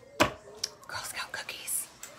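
A sharp click just after the start, then soft whispered speech with a hissed 's'-like sound near the end.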